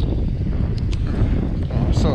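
Sea wind buffeting the microphone, a steady low rumble, with a few faint crackles from the plastic bag lining the bowl as the marinated rabbit is lifted out.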